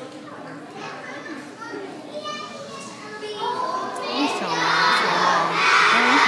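A crowd of young children shouting and cheering together. It is a quieter murmur at first and grows loud about four seconds in.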